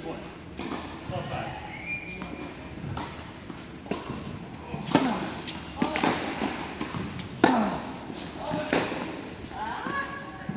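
Tennis balls struck by rackets and bouncing on an indoor hard court during a rally, a handful of sharp hits ringing in the large hall, the loudest about seven and a half seconds in.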